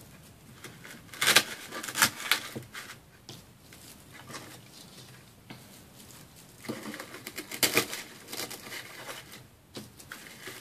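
Craft handling noises on a tabletop: a few sharp knocks about a second in and again near the end, as the wooden sleigh is shifted and artificial pine picks are handled, with scratchy rustling of the picks in between.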